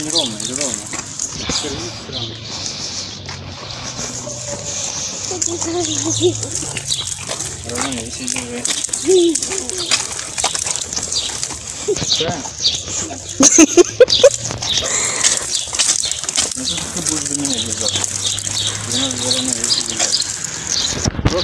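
Indistinct voices talking, with birds chirping throughout.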